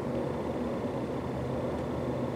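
Steady low hum and rumble of a running motor, unchanging throughout.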